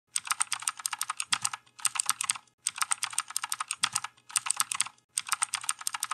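Rapid keyboard typing, quick clicks in bursts of about a second with short pauses between them.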